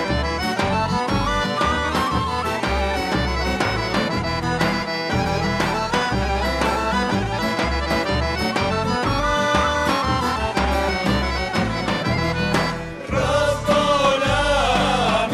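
Bulgarian folk instrumental music led by accordion, over a steady bass-and-drum beat. About a second before the end the music breaks off briefly, and a group of voices begins singing.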